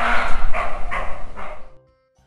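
Roe deer calling: about four rough, bark-like calls in quick succession, ending shortly before two seconds.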